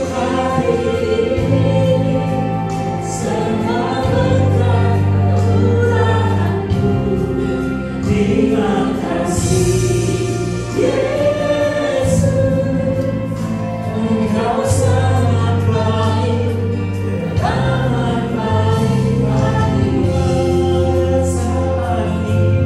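A congregation singing a worship song together over instrumental accompaniment that holds steady low bass notes, with occasional cymbal-like crashes.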